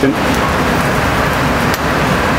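Steady sizzling hiss of bacon-wrapped eggs cooking on a wood-fired grill grate, with a light click near the end.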